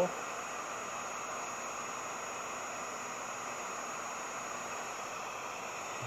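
Wagner HT1000 electric heat gun running steadily, its fan blowing a constant hiss of hot air with a thin high whine over it, as it heats old paint on the wooden hull until it bubbles.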